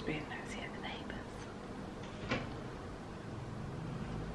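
A woman speaking softly, close to a whisper, for about the first second, then a single light knock about halfway through; otherwise quiet room tone.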